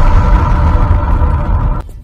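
Deep bass rumble with a steady held tone above it, cutting off shortly before the end.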